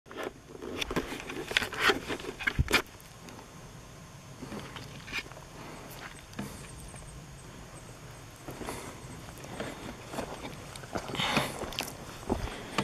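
Footsteps and the knocks and rustles of a hand-held camera as someone walks outdoors. A cluster of sharp knocks comes in the first three seconds, then a quieter stretch of outdoor background, then steps and rustling again near the end.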